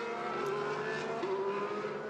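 McLaren-Honda Formula One car's 1.6-litre turbocharged V6 running at low, steady revs as the car slides to a halt after a spin, its pitch stepping up slightly a little over a second in.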